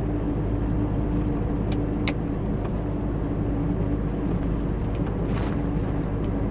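Scania 113 truck's six-cylinder diesel engine running steadily at cruise, heard from inside the cab with road noise, a steady drone with a constant hum. Two faint clicks about two seconds in.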